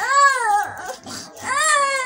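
A small child crying: two drawn-out wailing cries, each rising and then falling in pitch, the second starting about one and a half seconds in.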